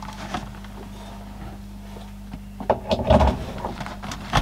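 Handling noise from the opened plastic calculator case being moved on the bench: a short cluster of knocks and clatter about three seconds in, over a steady low hum.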